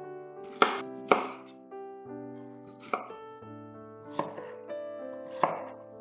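Chef's knife slicing through raw cauliflower florets and stem and striking a wooden cutting board: about five separate sharp cuts at an uneven pace, over soft background music.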